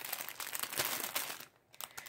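A plastic bag of decorative paper shred crinkling as it is handled. The crackling lasts about a second and a half, then stops.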